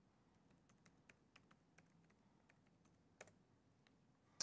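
Faint typing on a computer keyboard: scattered single keystrokes, with one sharper key press about three seconds in.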